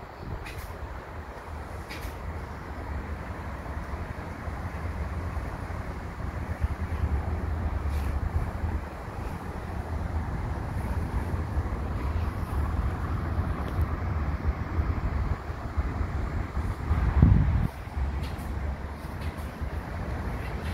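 Wind buffeting the microphone outdoors, a steady, fluttering low rumble, with one louder gust about seventeen seconds in.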